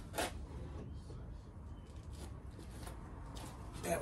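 Faint rustling and handling noises, with a brief louder rustle just after the start, over a low steady room hum while a finished cigar box guitar is fetched and picked up.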